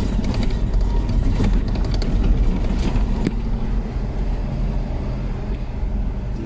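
Car driving on a gravel road: a steady low rumble of engine and tyres on gravel, with a few sharp ticks scattered through it.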